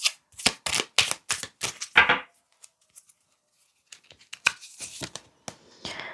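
A tarot deck being shuffled by hand: a quick run of card snaps over about two seconds, a pause, then fainter, scattered taps of cards as one is drawn from the deck.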